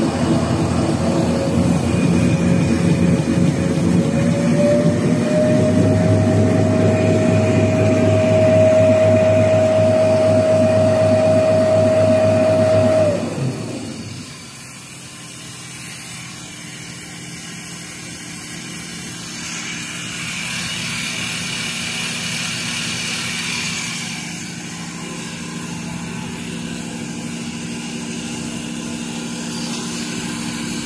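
Automatic napkin paper making machine running, with a steady whine from its drive that rises slightly in pitch a few seconds in. About halfway through, the whine cuts off and the noise drops sharply to a quieter steady hum.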